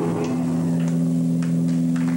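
Electric guitar through an amplifier holding a sustained low drone, two steady notes ringing on unchanged, with a few faint ticks over them.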